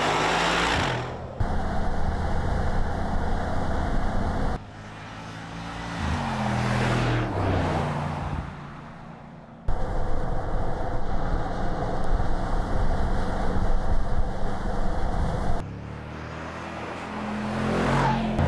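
Mercedes-AMG G 63's twin-turbo V8 running on the road, in several spliced takes that start and stop abruptly: steady engine drone while cruising, and about seven seconds in the SUV swells up and passes by, its engine note falling away. Near the end it grows louder again as it approaches.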